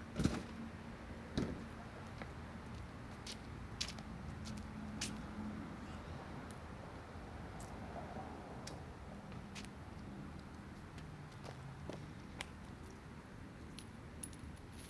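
A dumpster lid knocking as it is opened and shut to take broken brick pieces: two sharp knocks about a second apart, the first the loudest. Then faint scattered ticks as small brick chips are picked up off the pavement.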